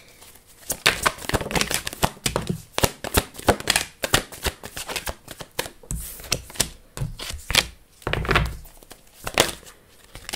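A tarot deck being shuffled by hand: a quick, irregular run of card clicks and snaps, with cards falling out onto a wooden table and a few dull thuds.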